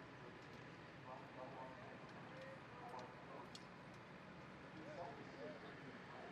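Very faint, distant talking over a steady low background hum, with a few faint clicks.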